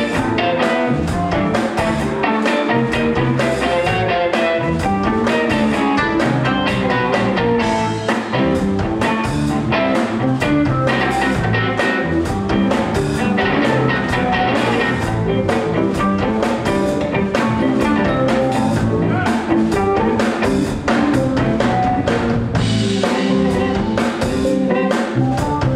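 Live instrumental band playing: electric guitar and electric bass over a busy drum kit with steady snare, rimshot and cymbal hits.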